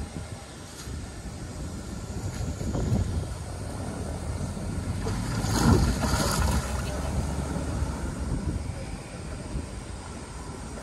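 Outdoor rumble of wind on the microphone and road traffic, with a louder splash of water about halfway through as a sika deer wades in a shallow pond.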